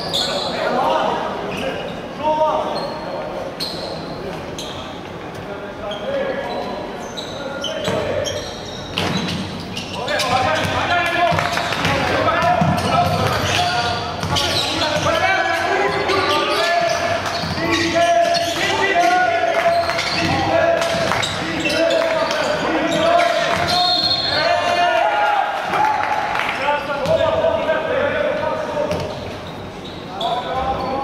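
A basketball bouncing on a hardwood court in a large, echoing sports hall, with voices throughout. From about a third of the way in, the voices grow louder and more drawn-out.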